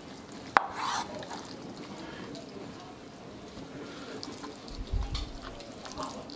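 Long knife slicing through smoked beef on a wooden cutting board: a sharp tap of the blade on the board about half a second in, then quiet cutting with a few soft knocks near the end.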